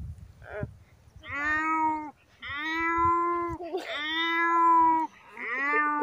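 A boy imitating a cat with his voice: three long, drawn-out meows in a row.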